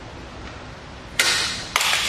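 Platform hitch bike rack being folded up: two short hard clanks, one about a second in and another just before the end, as the rack frame swings up into its folded position.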